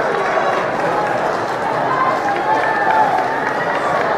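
Crowd of track-meet spectators cheering and shouting as the relay runners pass, a steady wash of many voices.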